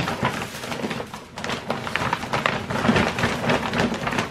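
Gift wrapping paper and tissue paper rustling and tearing as a present is unwrapped by hand: a dense, irregular run of crinkles and rips.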